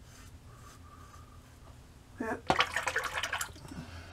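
Faint scraping of a single-edge safety razor through lather, then, about two seconds in, a short pitched sound and about a second of splashing, running water, as from a tap rinsing the razor.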